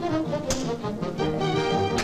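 Orchestral cartoon score with brass playing quick, busy phrases. A sharp hit cuts through about a quarter of the way in.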